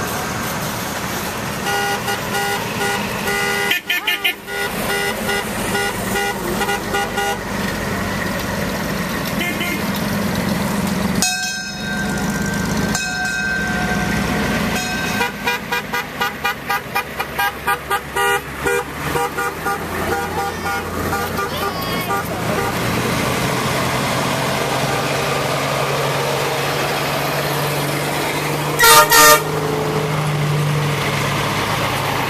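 A line of slow-moving vehicles, vintage military jeeps and cargo trucks among them, driving past with horns honking in repeated toots and a quick run of short beeps midway. A heavy military cargo truck's engine grows louder as it comes close near the end, and a brief loud blast comes just before the end.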